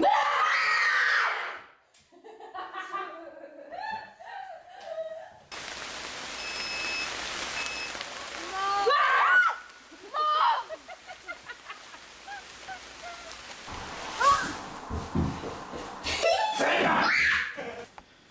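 Startled screams and laughter from people being made to jump in scare pranks, with bits of talk in between. There is a loud scream right at the start and another near the end, and a few seconds of steady hiss in the middle.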